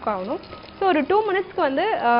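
Hot oil sizzling as samosa pinwheels deep-fry in a pan on a gas stove, under a woman's louder speech; the sizzle is heard plainly only in a short pause in the talk, about half a second in.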